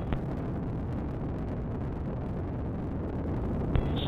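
Steady low rumble of the Ares I-X's four-segment solid rocket motor in flight. There is a brief click just after the start and another near the end.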